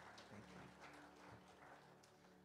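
Near silence: a few faint, scattered hand claps from the congregation applauding the singers, over a faint steady low hum.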